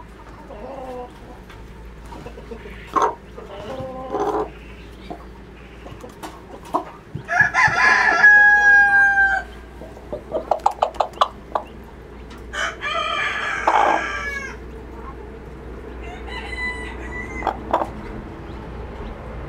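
Chickens calling in a coop: soft clucks, then a rooster crowing twice, each crow about two seconds long, about seven and about thirteen seconds in. A quick run of short ticks falls between the two crows, and more clucking comes near the end.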